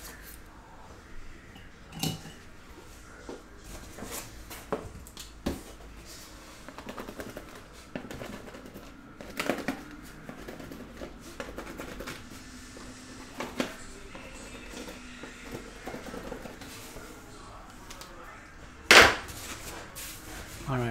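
Sealed trading-card boxes handled and packed into a cardboard case: scattered knocks, clicks and cardboard rustling, with a louder thump near the end.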